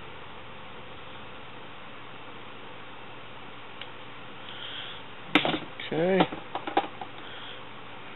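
Steady low background hiss, with one sharp click about five seconds in and a few small clicks after it.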